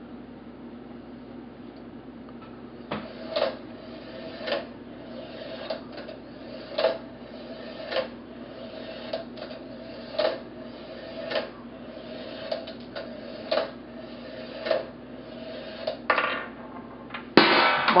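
A marble rolling along a Meccano metal track with a steady rolling hum, clicking sharply about once a second as it works its way down. Near the end it clatters and then sets off a loud crash.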